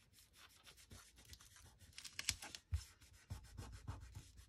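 Fingertips rubbing and pressing a paper sticker label down onto cardstock: quiet, irregular scratchy strokes that get a little firmer toward the end.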